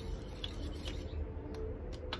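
Metal spoon stirring baking soda into water in a small glass bowl, scraping and giving a few light ticks against the glass, to dissolve the powder.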